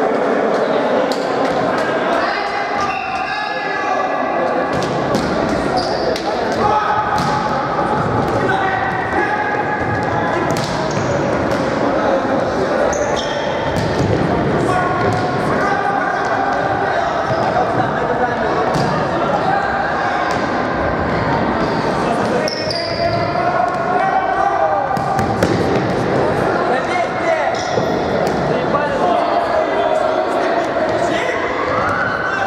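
Futsal match in a sports hall: players' indistinct shouts and calls, with repeated sharp thuds of the ball being kicked and bouncing on the wooden floor, echoing in the hall.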